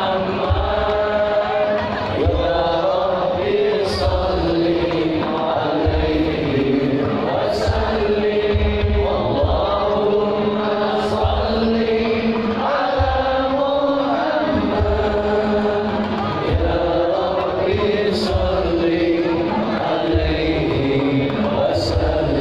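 Devotional sholawat sung in unison by many voices, the melody held in long chanted lines, over steady low drum beats.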